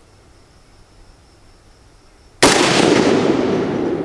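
A single rifle shot from a WASR-10 AK rifle, a 7.62×39 mm AK-pattern rifle, about two and a half seconds in: a sharp crack followed by a long echo that fades over more than a second.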